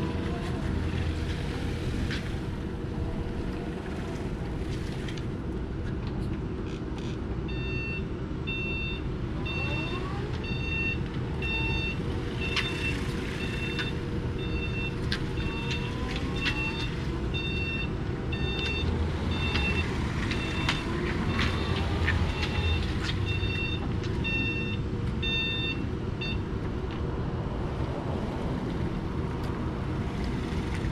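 LiftHero CPD25 electric forklift manoeuvring, its reversing alarm beeping in an even, repeated train from several seconds in until a few seconds before the end. Under it runs a steady low rumble with a faint constant hum.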